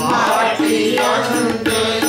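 Sikh kirtan: a tabla pair is played in a steady rhythm under a woman's lead voice, with a group of voices singing along.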